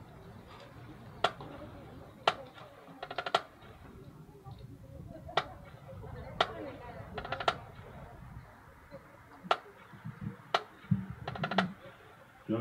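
Low murmur of voices, broken about once a second by sharp clicks, some of them coming in quick little rattles. No music is playing.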